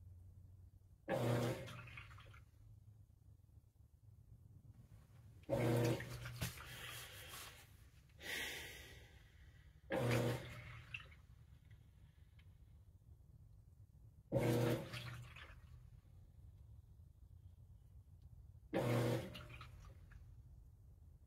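Whirlpool WTW4816 top-load washer in its wash phase: the drive motor kicks in five times, about every four and a half seconds, each stroke starting with a hum and trailing off into water sloshing around the load in the tub.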